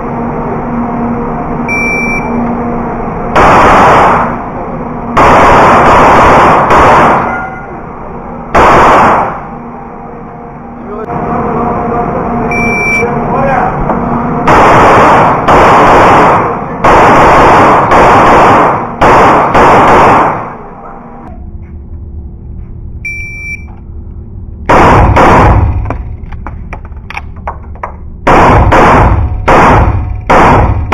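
CZ 75 Shadow pistol firing strings of shots during an IPSC stage on an indoor range; each report overloads the camera's audio and rings on in the hall's echo. The shots come in groups with pauses between them, and a quick run of shots comes near the end.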